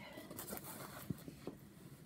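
Faint handling sounds of a fabric project bag being moved and rustled, with a few soft ticks, the clearest about a second in.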